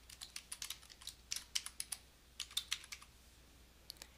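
Computer keyboard being typed on: a quick run of light keystrokes entering a password, a brief pause about two seconds in, then a few more keystrokes.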